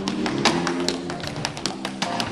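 Tap shoes striking a wooden stage in a rapid, uneven run of taps, about five or six a second, over a live band of drum kit and electric bass.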